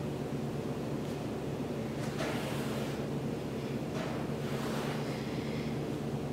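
Heavy breathing after exertion: two soft, rushing exhales about two and four seconds in, over a steady low room hum.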